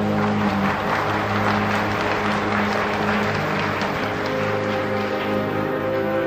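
Audience applause breaking out over the orchestra, which keeps holding sustained chords in a live opera-house recording; the clapping dies away near the end.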